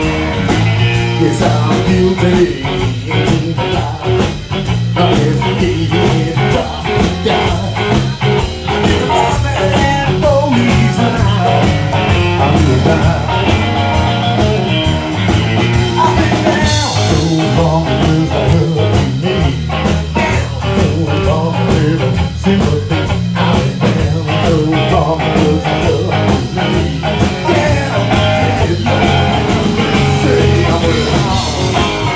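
Texas blues played live by an electric trio: a Fender Stratocaster electric guitar playing over bass guitar and a drum kit, in an instrumental stretch between sung verses.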